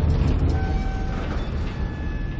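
A loud, deep, steady rumble of trailer sound design, with a few faint held tones above it.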